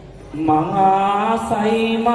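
Male voice chanting a Sinhala viridu verse in a melodic, drawn-out line over a steady low drone, beginning about half a second in after a brief lull. A single light click is heard about a second and a half in.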